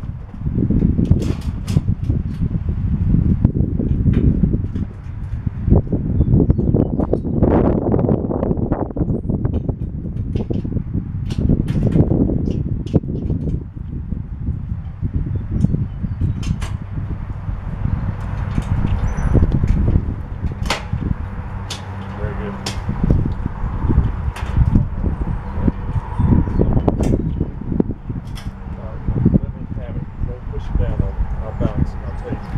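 Metal spa dolly and hot-tub slider knocking and clanking irregularly as the tipped hot tub is shifted and levered on it, over a continuous low rumble.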